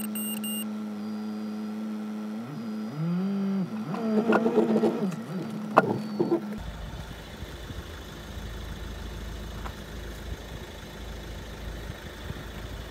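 A car engine inside the cabin held at a steady high drone, briefly dropping and climbing again in pitch, as the driver tries to get the car moving out of the mud. About halfway through, this gives way suddenly to a low outdoor rumble of an engine idling.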